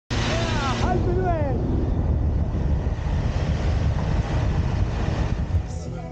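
Van driving on a road: steady engine and tyre rumble with wind buffeting the microphone. A couple of short, falling, voice-like whoops come in the first second and a half.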